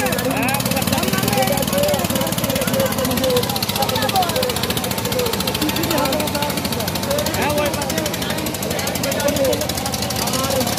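Single-cylinder diesel engines of two-wheel power tillers running hard through mud, a steady rapid chugging, under a crowd of spectators shouting.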